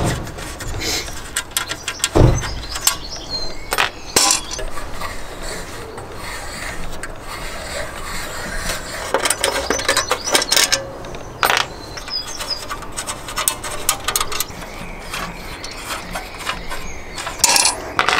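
Small screws on a metal ECU holder being undone with an allen key while the metal box is handled: light metallic clicks and scrapes, with a few louder knocks, one about two seconds in, one about four seconds in, and one near the end.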